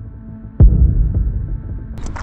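A deep bass impact hit about half a second in, decaying under a low steady hum: a cinematic transition sound effect.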